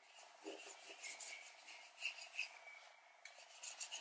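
Bristle paintbrush dragging thick acrylic paint across paper: a series of faint, scratchy strokes at irregular intervals.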